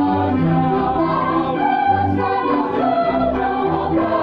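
A mixed church choir of women and men singing in several parts, holding long notes that move from chord to chord.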